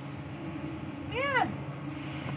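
A kitten gives one short mew about a second in, rising then falling in pitch, over a steady low background hum.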